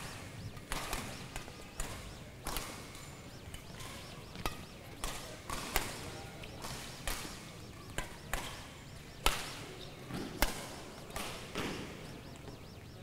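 Badminton rally: a racket smacks a shuttlecock back and forth, sharp single strikes coming irregularly about every half second to a second.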